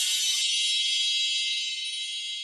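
A bright, high-pitched electronic shimmer, a sparkle sound effect of many steady high tones held together and slowly fading. The lower notes of the jingle under it drop out about half a second in.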